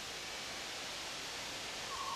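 Steady, even hiss with no other sound, and a faint steady tone coming in near the end.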